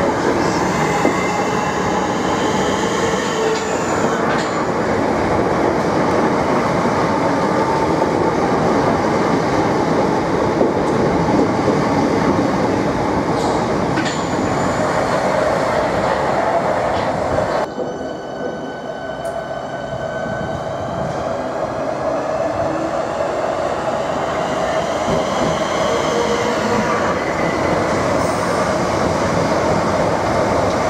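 Southeastern Electrostar electric multiple-unit trains running past a platform: a continuous rumble and clatter of wheels on the track, with a high electric whine that bends up and down. About 18 seconds in the sound cuts abruptly to another, slightly quieter passing train.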